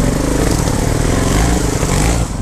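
Trials motorcycle engine running steadily, heard close up from a bike being ridden over a rocky trail.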